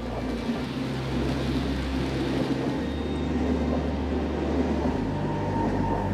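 A train running past with a steady rolling rumble. A low hum underneath steps to a new pitch twice.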